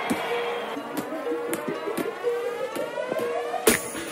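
Intro music: a held tone under a rising sweep that builds for a couple of seconds, cut off by a sharp hit near the end.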